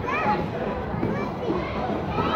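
Children playing: high voices calling and shrieking briefly over a steady babble of many kids.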